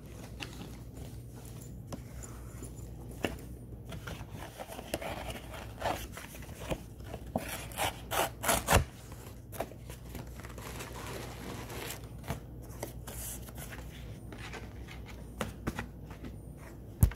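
Close rubbing, scraping and clicking handling noises, with a cluster of sharper clicks around the middle, over a steady low hum.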